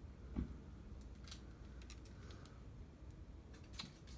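Quiet handling noise as a gloved hand works the edge of a wet, tilted canvas: a soft knock about half a second in, then scattered light clicks over a low steady hum.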